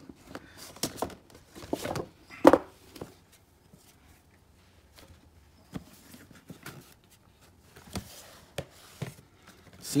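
Cardboard packaging being handled: rustling and scattered clicks as a paper sleeve slides off a small cardboard box and its lid is opened, with one sharp knock of card about two and a half seconds in.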